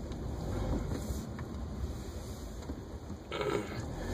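Low, steady rumble inside a car's cabin, with a short faint sound a little after three seconds in.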